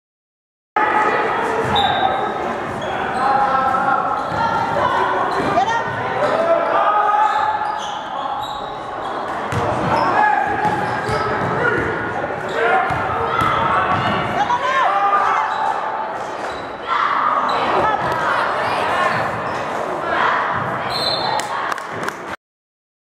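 Basketball game in a gym: the ball bouncing on the hardwood court amid players' and spectators' voices, echoing in the large hall. It cuts in suddenly about a second in.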